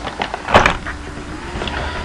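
Handling noise from packaging and boxes, with one sharp knock about half a second in followed by quieter rustling.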